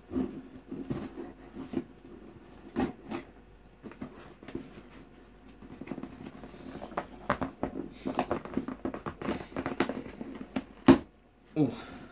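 Packing tape being picked at and torn off a cardboard box by hand, with cardboard rustling and scraping, scattered clicks, and one sharp snap near the end.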